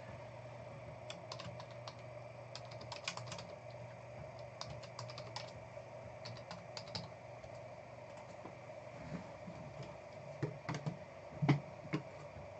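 Bursts of typing on a computer keyboard, irregular runs of light key clicks over a steady low hum, as a card is entered into the list. Near the end come a few soft thumps from hands handling the card case.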